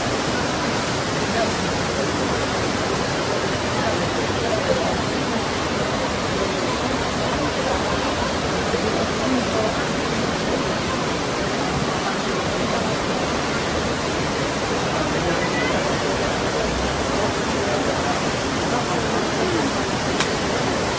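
Floodwater from a flash flood rushing through streets: a steady, unbroken rush of churning muddy water, with faint voices underneath.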